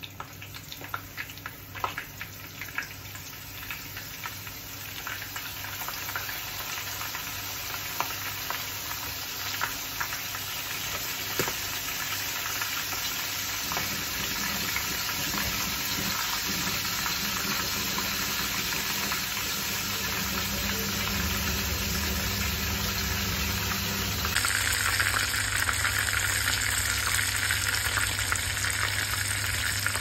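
Fish pieces frying in hot oil in a non-stick pan, a steady sizzle with sharp crackling pops in the first few seconds as the pieces go in. The sizzle builds steadily louder as the fish cooks.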